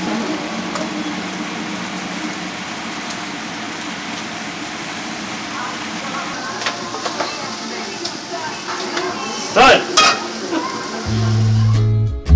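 Shellfish pieces sizzling steadily as they are stir-fried in a frying pan, with metal tongs clicking and scraping against the pan. There are two loud clacks about ten seconds in, and music with a bass line comes in near the end.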